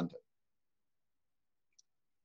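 A man's spoken word ends just after the start, then dead silence broken by one faint, short click near the end.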